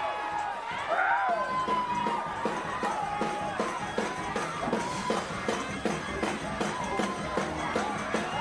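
Up-tempo gospel praise-break music with a steady, driving beat, and a church congregation shouting and whooping over it.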